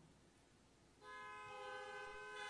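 Near silence for about a second, then a soft sustained keyboard chord comes in and holds steady, several notes sounding together.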